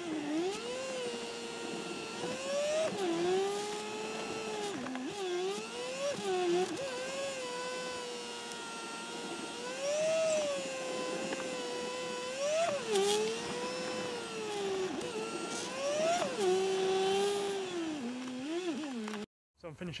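Car engine recorded inside the cabin and played back sped up, so it sounds high and racy. The pitch climbs under acceleration and drops sharply at each gear change, several times over, and falls away as the car slows between bursts. The sound cuts off just before the end.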